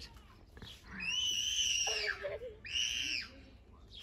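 A small girl screaming, two long high-pitched shrieks: the first starts about a second in and lasts over a second, the second is shorter and comes near the end.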